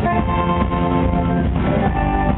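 Rock band playing live: electric guitars sustaining chords over bass and drums.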